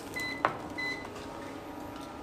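Two short, high electronic beeps about half a second apart, with a sharp click between them that is the loudest sound.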